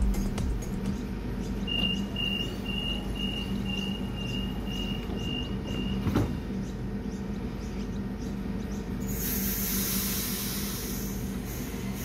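Sydney Trains double-deck electric train standing at a platform with a steady low hum. A run of about nine evenly spaced high beeps, the door-closing warning, ends in a sharp knock as the doors shut, and about three seconds later a loud hiss of air starts.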